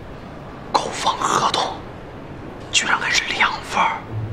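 Speech only: a man says two short, surprised phrases over quiet room tone.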